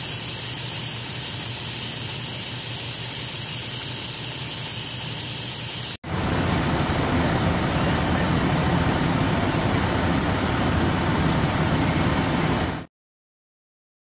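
Water hissing as it sprays steadily from a leaking hose coupling on a fire hydrant. After a cut about 6 s in, a louder steady low rumble takes over and stops abruptly about a second before the end.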